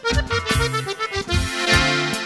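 Instrumental norteño music: an accordion plays the melody over a steady bass-and-guitar rhythm, with no singing.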